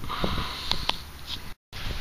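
A person sniffing, a breathy hiss with a couple of faint clicks; the sound breaks off completely for a moment near the end.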